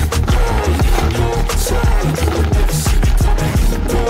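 Background music: a song with a steady drum beat and bass.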